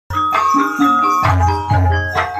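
Gamelan music: struck metal keyed instruments ring out a melody over deep, regular low beats. It cuts in abruptly a moment in, after a silent edit.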